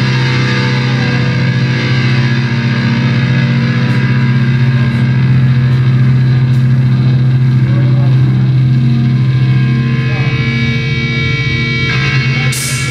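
Live rock band holding a droning distorted guitar and bass chord, steady and sustained, with only occasional faint hits.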